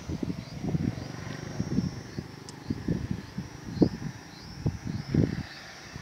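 Wind buffeting the microphone in low, uneven gusts, with a few faint, short, high chirps now and then.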